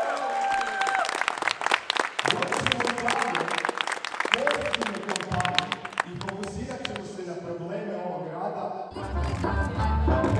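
A crowd applauds, with many hands clapping and voices over it. About nine seconds in, loud music with heavy bass starts.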